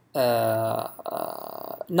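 A man's drawn-out hesitation sound, a steady "aah" held for most of a second, then trailing off quieter and rough, creaky in tone.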